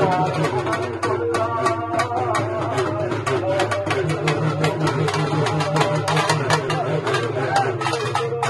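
Urumi melam drum ensemble playing: a dense, steady run of drum strokes with a wavering, wailing pitch gliding up and down over it, the moaning voice of the urumi drum rubbed with its stick.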